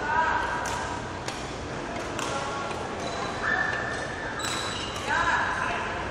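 Court shoes squeaking in short, repeated squeals with footfalls on a badminton court floor during a footwork drill, echoing in a large hall.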